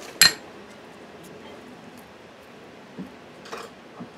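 A single sharp clack with a brief ring just after the start, as a hot glue gun is set down on a hard surface. A couple of faint taps follow near the end as the paper rose bud is handled.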